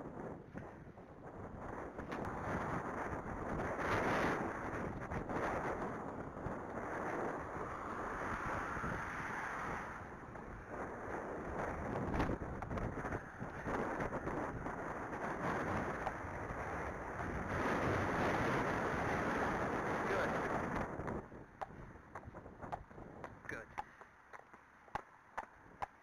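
Wind buffeting the microphone in long gusts that swell and fade, then dropping away about five seconds before the end, where a few faint hoof clops of a walking horse on a paved lane come through.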